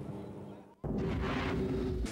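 Faint race-side ambience fades out. A little under a second in, a sudden loud boom starts, followed by a rush of noise: a broadcast transition sound effect under an on-screen graphic.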